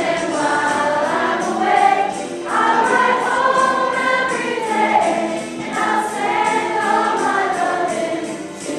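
A mixed high school choir singing a pop song with accompaniment that keeps a steady beat. The singing comes in three phrases, with short breaks about two and a half seconds in and again near six seconds.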